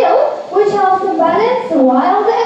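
A woman's voice talking without a break: presenter narration.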